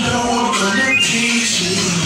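R&B music playing loudly, with one pitched line gliding upward about half a second in.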